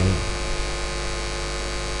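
Steady electrical mains hum with a layer of hiss, from the microphone and amplification chain, heard in a gap between spoken words.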